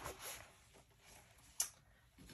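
Quiet room tone with a single sharp click or tap about one and a half seconds in.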